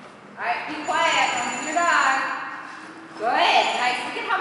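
A person talking indistinctly, in stretches with a short pause about three seconds in, echoing in a large hall.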